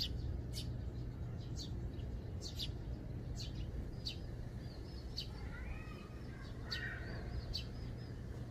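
Eurasian tree sparrows chirping: short, sharp chirps about once or twice a second, with a brief patch of softer twittering around five to seven seconds in, over a low steady hum.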